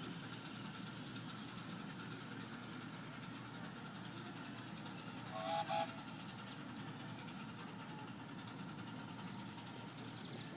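Two short blasts of a miniature steam locomotive's whistle, close together a little past halfway, over a steady low background rumble.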